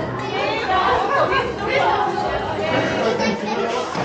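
Indistinct chatter of several people's voices in a roofed station hall.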